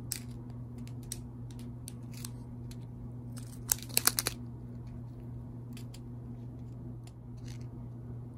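Small plastic bags of square resin diamond-painting drills being handled: scattered crinkles and clicks, with a quick burst of sharp clicks about halfway through, over a steady low hum.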